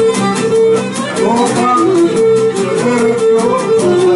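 Cretan lyra bowing a syrtos melody over two laoutos strumming a steady rhythmic accompaniment.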